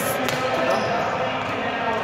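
Badminton racket striking a shuttlecock: a sharp crack right at the start, followed by a second, lighter knock shortly after, over people talking.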